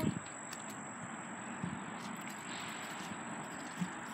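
Quiet outdoor background: a low, steady hiss with a thin, constant high-pitched whine running through it, and a few faint soft knocks.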